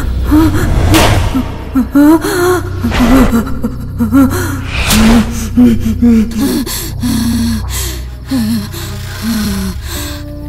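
A person gasping and panting with a frightened, voiced breath that wavers in pitch, with sharp loud intakes about every two seconds in the first half, over a low steady drone.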